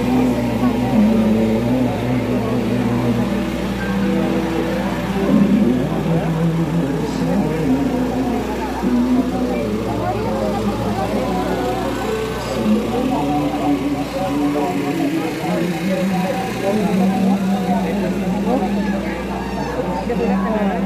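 Voices singing a slow hymn or chanted prayer in long held notes that step from pitch to pitch, over overlapping crowd voices. A steady low hum runs beneath.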